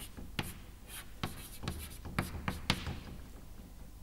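Chalk writing on a blackboard: a quick run of short strokes and taps that stops about three seconds in.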